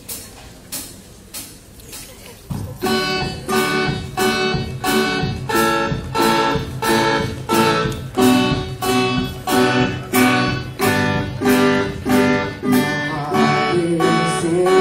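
Acoustic guitars strumming chords in an instrumental passage: a few soft strums, then full, steady strumming from about two and a half seconds in, at about two strums a second.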